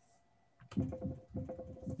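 Computer keyboard typing picked up by a video-call participant's microphone: a quick run of key clicks starting about two thirds of a second in, over a faint steady hum.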